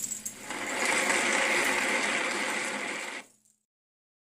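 Sequined costume and beaded jewellery rattling and jingling as the wearer moves, a steady rustling rattle for nearly three seconds that cuts off suddenly.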